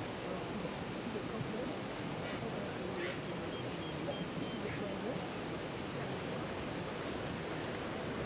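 A large herd of wildebeest crossing a river: steady splashing of water as the animals plunge in and swim, with many short, overlapping grunting calls from the herd.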